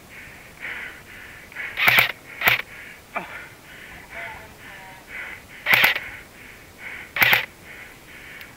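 Airsoft gunfire: four sharp single shots, two close together about two seconds in and two more near the end, over a faint regular ticking about twice a second.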